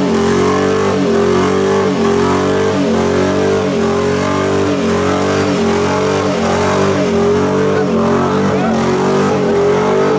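Truck engine held at high revs through a burnout, with the drive tyres spinning on the pavement. It runs loud and steady, its pitch dipping slightly and regularly about every half second.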